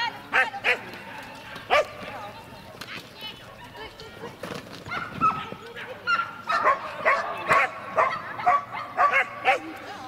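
Border collie barking in short excited bursts as it runs an agility course, most rapidly over the last few seconds, mixed with the handler's shouted commands.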